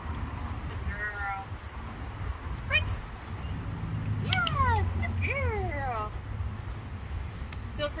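A dog whining in high, falling whimpers: a short one about a second in, then a run of several longer ones between about four and six seconds in, over a steady low rumble.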